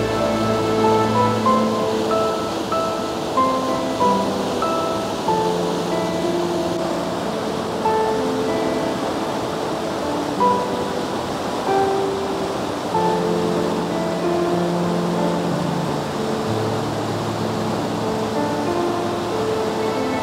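Slow background music of held notes, laid over the steady rush of flowing river water.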